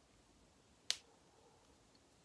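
Near silence with a single short, sharp click a little under a second in.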